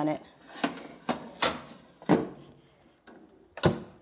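Metal baking tray sliding into a Cuisinart countertop toaster oven and the oven door closing: a handful of irregular clanks and clicks, the loudest near the end.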